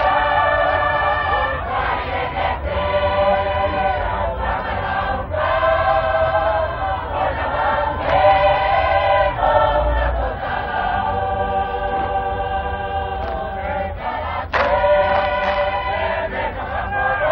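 Tongan lakalaka singing: a large group of voices sings in long held phrases of a few seconds each, with short breaks between phrases and a brief sharp accent near the end.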